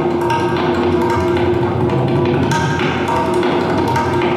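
Tabla played in fast, dense strokes across a set of several tuned drums, their pitched rings sounding steadily under the strikes, accompanied by a plucked Afghan rubab.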